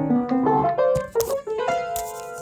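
An upright piano played by hand, single notes climbing in a short run and then a held chord fading. A few brief knocks fall about a second in and again at the end.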